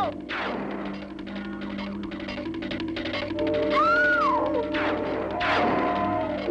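Cartoon background music, with a swooshing sound effect just after the start and another near the end as a character whizzes off.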